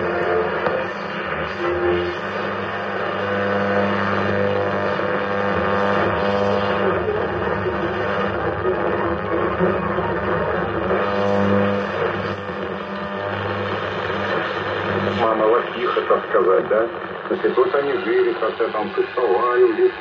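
Medium-wave AM broadcast from a Sailor 66T marine receiver's loudspeaker: music with long held notes, giving way about three-quarters of the way through to Russian-language speech.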